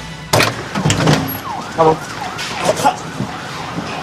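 A siren, with several sharp knocks and bangs in the first second or so.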